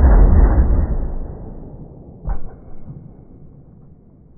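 Slowed-down replay of a Greener harpoon gun firing its .38 Special blank: a deep, drawn-out boom that fades away over about three seconds, with a second, shorter thud a little past two seconds in.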